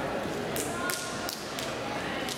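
Four short, sharp slaps from a wushu changquan performer's strikes and footwork, coming about a third of a second apart, over a steady murmur of chatter in the hall.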